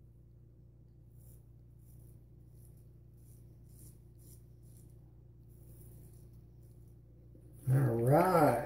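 Faint, short scraping strokes of a Parker SRB shavette razor with a Shark half blade cutting stubble through lather on the neck, one stroke after another, over a steady low hum. Near the end, a brief loud vocal sound from the man.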